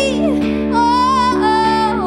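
A song with a female lead voice holding long notes that waver with vibrato, over electric guitar and band accompaniment.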